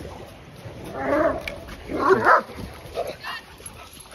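A dog barking: two barks about a second apart, then a couple of shorter, fainter sounds near the end.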